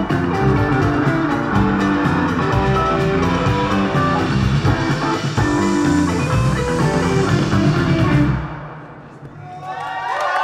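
Indie rock band playing a song on electric guitar, bass guitar and drums. The music fades out about eight seconds in.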